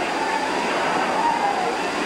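Steady hubbub of a large arena crowd: many voices blended into an even murmur, with no single voice standing out.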